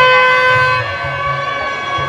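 Loud procession music: a long, steady, held high note from a reed or wind instrument over a repeating drum beat. The held note eases off a little partway through.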